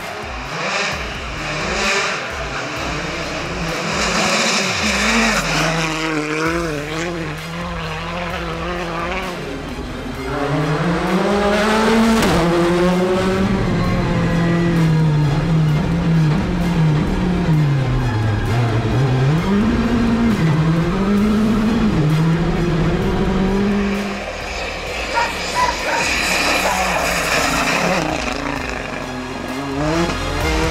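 Hyundai i20 R5 rally car's 1.6-litre turbocharged four-cylinder engine driven flat out on a stage, its note climbing and dropping with each gear change and braking. This is heard from inside the cabin and is loudest in the middle. Near the start and end come bursts of rushing tyre and gravel noise as the car passes.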